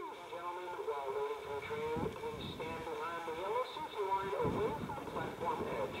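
Station public-address announcement: a voice over the platform loudspeaker, thin and cut off in the highs, starting suddenly and running on.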